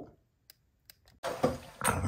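Near silence with two faint, short clicks. After about a second, room sound returns and a man's voice begins near the end.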